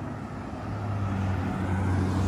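Pickup truck driving up the road and drawing alongside, its low engine hum growing steadily louder as it approaches.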